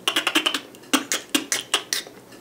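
A beatboxer's mouth percussion: a rapid run of sharp clicks and snares, made by combining the K.I.M. squeak with an outward K snare (the TK technique). The strokes come several times a second.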